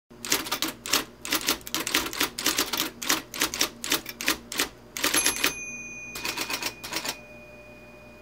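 Typewriter keys striking out a line of type in a quick run of about twenty clacks, then a brief pause and a few more clacks. A single high ring comes in about five seconds in and hangs on after the typing stops.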